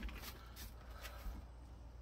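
Faint steady low rumble of a distant train, with a click at the start and a few soft rustles of the phone being handled.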